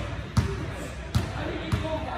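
A basketball bounced three times on a gym floor, each bounce a sharp thud: the shooter's dribbles at the free-throw line before the shot.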